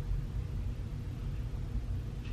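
A steady low rumble of background noise, even in level throughout.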